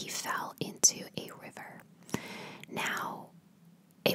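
A woman whispering close to the microphone, with a few small sharp clicks among the words; the whispering stops about three seconds in.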